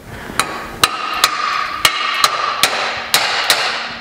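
Rubber mallet striking a powder-coated aluminum stair rail about eight times, roughly two strikes a second, driving the rail down so the balusters seat in its slotted holes.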